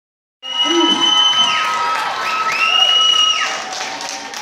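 Spectators cheering and shouting, with two long high whistles that each hold steady and then slide down in pitch as they end. The sound cuts in about half a second in.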